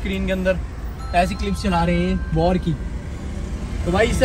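A man's voice in short bursts over a steady low rumble from a car, heard from inside the vehicle.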